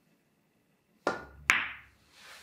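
Fury pool cue tip striking the cue ball about a second in, followed half a second later by a sharp clack as the cue ball hits an object ball.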